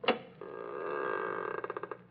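Doorbell sound effect: a sharp click, then a ringing tone held for about a second and a half that breaks into fast pulses near the end.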